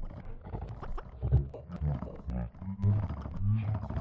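Kyma granular voice processing: short, low, chopped voice fragments that break off every fraction of a second, with scattered clicks between them and no recognisable words.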